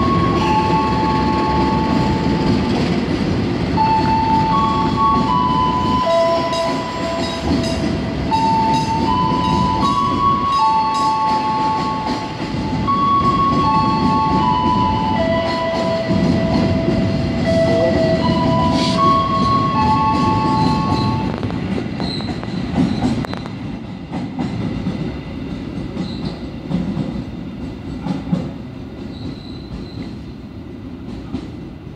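Freight train of flat and container wagons rolling past at close range, a steady rumble of wheels on rail. For about the first twenty seconds, held high tones ride over it, stepping from one pitch to another. The sound dies down in the last several seconds as the end of the train passes.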